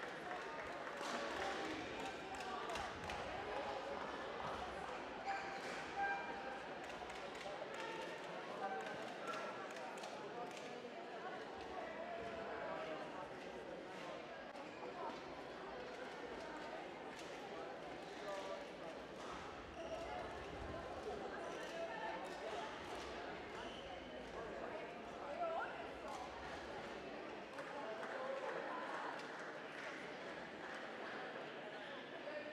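Sports hall ambience during a break in play: a steady murmur of voices with scattered sharp knocks and taps throughout.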